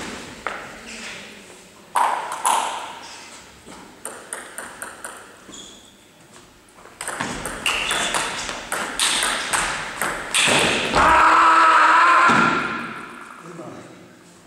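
Table tennis ball clicking off the table and bats in quick sharp ticks during a rally. Near the end comes a loud shout lasting about two seconds.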